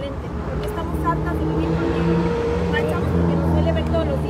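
A motor vehicle's engine running close by on the street: a steady low hum that grows louder after about a second, with a woman's speech partly audible over it.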